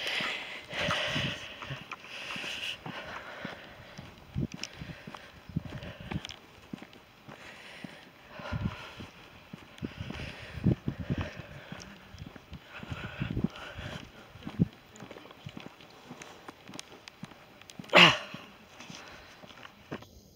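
Footsteps of a person walking on a tarmac path: irregular soft thuds with light rustling, and one brief louder sound near the end.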